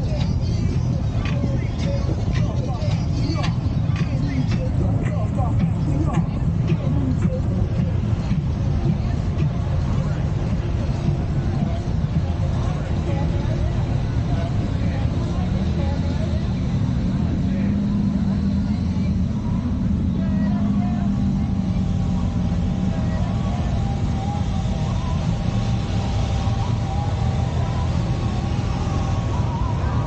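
Engines of Polaris Slingshot three-wheeled roadsters and other vehicles running at low speed in a slow procession, a steady low rumble with one engine note rising and falling around the middle; people talk in the background.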